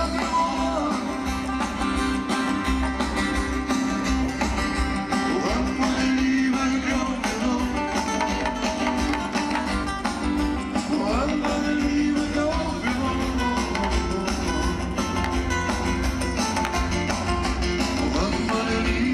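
Live band music: strummed acoustic guitars over drums and bass, played at a steady level on an amplified concert stage.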